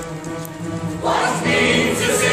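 Live pit orchestra holding sustained chords; about a second in the full opera chorus comes in, singing loudly over it.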